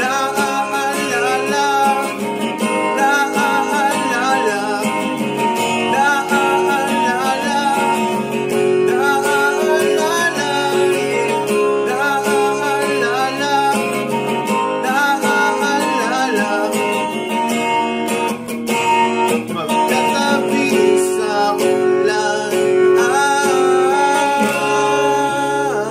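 A man singing a pop-rock ballad over a strummed acoustic guitar, the voice and chords continuing without a break.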